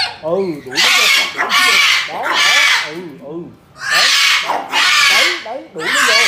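Sulphur-crested-type white cockatoo screeching harshly about six times, each screech about half a second long, as it squares off with small dogs. Lower wavering calls sound in the gaps between screeches.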